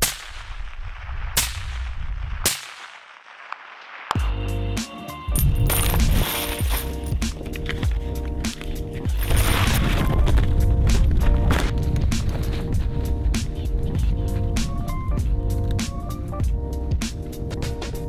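Two sharp cracks in the first few seconds, then instrumental background music with a steady beat.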